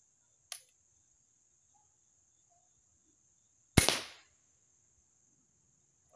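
A light click about half a second in, then a Killer Instinct Boss 405 crossbow firing a little before four seconds in: one loud, sharp snap that dies away within half a second.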